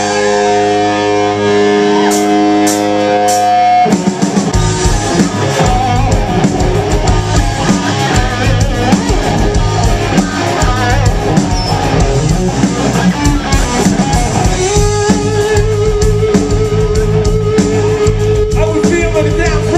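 Live hard rock band: a chord rings out steadily for about four seconds, with four sharp clicks near its end, then drums, electric guitars and bass come in together and play on. A long held note joins near the end.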